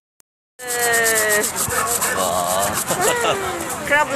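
After about half a second of silence, close, steady rubbing and crinkling handling noise from plastic film packaging being gripped and moved in the hand, over a few voices in the background.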